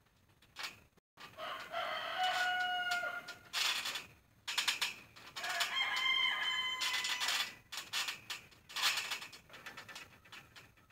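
A rooster crowing twice, each crow a held call of about a second and a half, some four seconds apart. Between and around the crows come repeated short creaks and thumps from the trampoline's springs and mat as someone moves on it.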